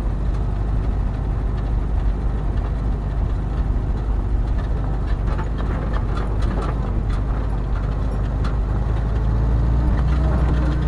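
Heavy vehicle engine running steadily, heard from inside the cab as it rolls slowly along, with a low rumble. A run of light clicks and rattles comes through in the middle.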